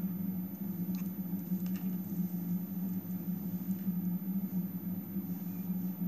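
A few faint light ticks and rustles of a beading needle and thread being worked through small glass beads, over a steady low hum.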